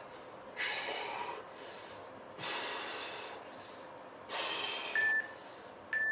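A man breathing hard in about four loud, hissing breaths while holding an abdominal V-sit under strain. Near the end an interval timer gives a short countdown beep, then another.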